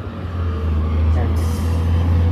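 Street traffic with a city bus: a steady low engine rumble, and a short hiss of air near the end.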